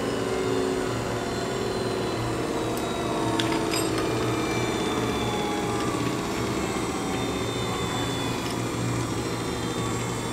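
Parker-Majestic internal grinder running with its table traversing under power stroke: a steady motor hum, with a few light clicks about three to four seconds in.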